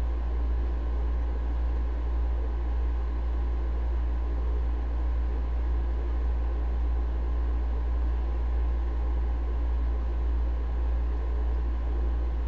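A steady deep rumble under an even hiss, unchanging, with no distinct events.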